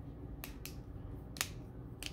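Three short, sharp clicks over quiet room tone: two close together about half a second in and one near one and a half seconds.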